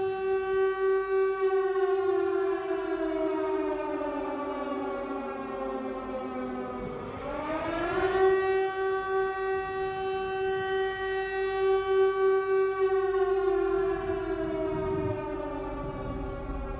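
A siren wailing: one steady tone holds while a second tone slowly falls in pitch, sweeps quickly back up about seven seconds in, and falls again near the end.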